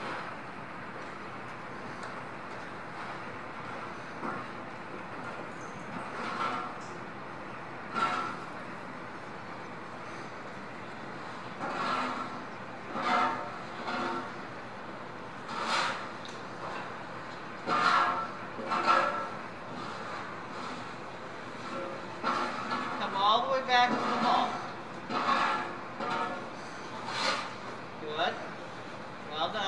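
Faint, indistinct voices in short bursts over a steady background rumble, the voices coming more often toward the end.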